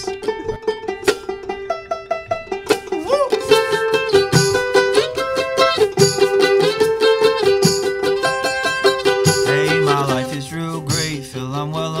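Acoustic string band playing a song intro: mandolin picking a melody over strummed acoustic guitar and banjo, with a shaker keeping a steady beat. A voice starts singing near the end.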